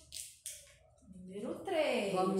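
Two short paper rustles as a numbered card is pressed onto a wall. Then, near the end, a woman's voice comes in, a drawn-out sound falling in pitch and getting louder.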